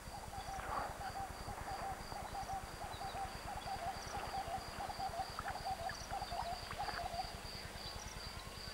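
Wildlife ambience: a low animal call repeated in quick notes, several a second, stopping about seven seconds in, over a steady high pulsing trill.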